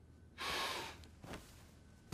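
A man's short, breathy exhale like a sigh, about half a second long, followed by a fainter brief sound.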